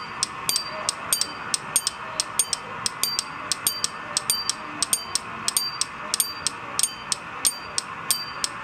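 Sharp clicks repeating at about three a second over a steady hiss.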